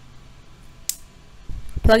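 A single sharp plastic click about a second in, typical of the lever on a push-in wire connector snapping shut on the joined wires, followed by a few soft handling thumps.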